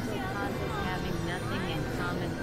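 Experimental synthesizer drone music: a dense low drone under repeated rising and falling pitch glides, about two a second.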